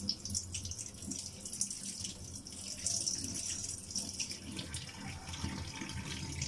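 Water running steadily from a tap into a sink, with small irregular splashes.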